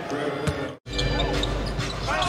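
Game sound from a basketball court: a ball bouncing on the hardwood floor with sharp knocks over the arena background. The sound cuts out briefly just before one second in, where one play is edited to the next.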